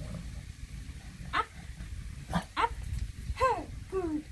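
Bulldog puppy whining in short bursts, about four brief whines across the few seconds, a pair close together in the middle and the later ones sliding down in pitch.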